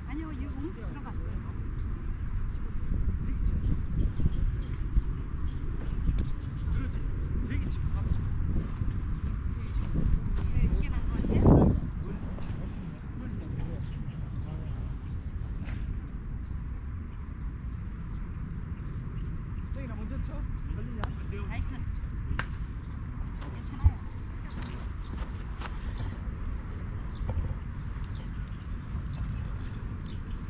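Open-air ambience on a green with a steady low rumble and faint voices, a louder swell of rumble a little before the middle, and a single sharp click about three-quarters of the way through.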